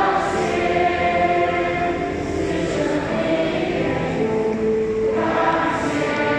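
Church choir singing a slow hymn in long held notes, several voices in harmony.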